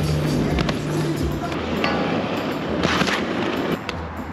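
Inline skates scraping along a metal handrail in a pud slide grind, with a few sharp knocks of skate on rail, under background music with a steady bass line.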